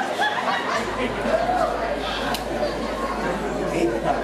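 Indistinct chatter of several voices talking at once in a large hall.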